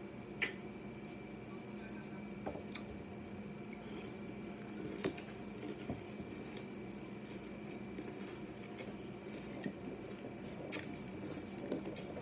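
Faint chewing of a mouthful of honey-oat cereal with marshmallows in milk: scattered soft crunches and clicks, the sharpest just after the start, over a steady faint hum.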